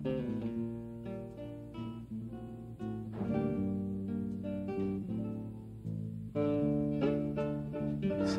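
Background music: acoustic guitar playing plucked and strummed chords.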